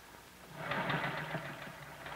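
Electric sewing machine running a short burst of stitching, starting about half a second in, to tack the collar's finished edge in place at the center front of the blouse.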